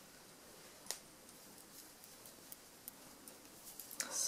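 Near silence with faint, scattered clicks of steel double-pointed knitting needles knocking together during knitting, the sharpest one about a second in.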